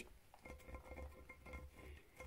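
Near silence: faint room tone with a few faint small ticks.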